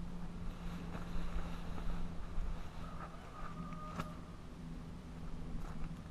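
Outdoor ambience dominated by a low rumble of wind on the microphone, with a steady low hum underneath. A few faint clicks and knocks, the sharpest about four seconds in.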